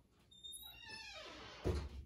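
A single drawn-out, high-pitched squeal that falls in pitch over about a second, followed by a low thump near the end.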